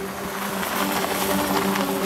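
A car driving by on a road: engine and tyre noise swelling as it passes, over a low steady hum.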